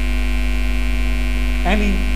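Steady electrical mains hum on the recording, loud and unbroken during a pause in the lecture; a voice comes back in near the end.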